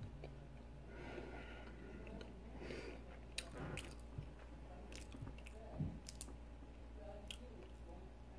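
Faint chewing of a chocolate-glazed donut: soft, wet mouth sounds with a scatter of small clicks.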